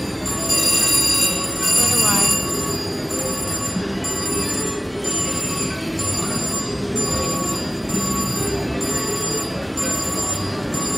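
Slot-machine floor din: electronic chimes and beeping tones from the slot machines switch on and off over a murmur of crowd chatter. Two louder bursts of tones come in the first two seconds as the VGT slot machine's red-screen free spin plays out.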